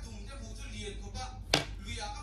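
A single sharp click or knock about one and a half seconds in, standing out over faint background voices.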